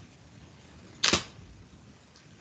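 A single short, sharp click, much louder than the faint hiss around it, about a second in.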